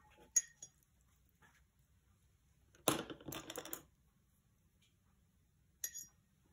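Light hard clinks of a paintbrush against painting gear: a sharp click about half a second in, a short cluster of clinks and scrapes near the middle, and one more click near the end.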